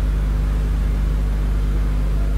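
A steady low hum.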